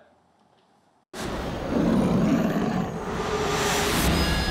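Near silence for about a second, then a loud roaring rumble starts suddenly and carries on: the dramatic opening sound of a TV show preview.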